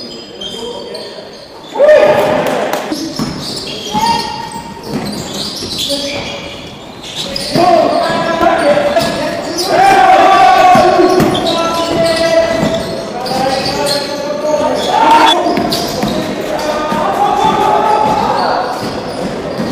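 Live court sound of an indoor basketball game: the ball bouncing on the hardwood floor amid players' shouts and calls, echoing in a large gym.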